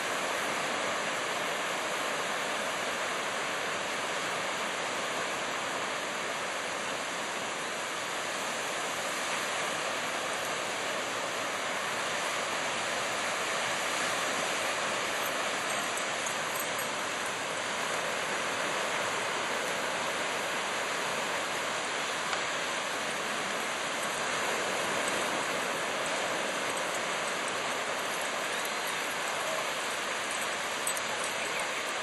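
Ocean surf breaking and washing onto a sandy beach: a steady rush of waves that swells slightly now and then.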